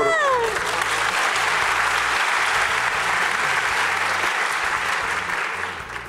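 Studio audience applauding steadily, with a laughing voice trailing off in the first half second.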